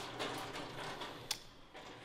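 A single short, sharp click from the lock of a metal locker door as it is worked by hand, over faint room noise.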